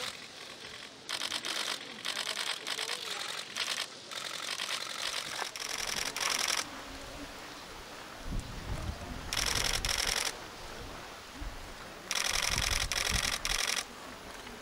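Press cameras firing their shutters in rapid bursts, several bursts one after another, with a low rumble under the later ones.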